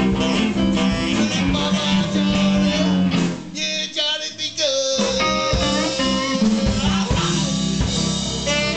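Live blues band playing with electric guitars, drums and a singer. A little past three seconds in, the band drops out for a break of about a second and a half, then comes back in.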